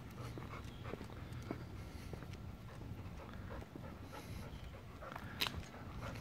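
Golden retriever panting softly, with a few faint clicks and a sharper tick about five and a half seconds in.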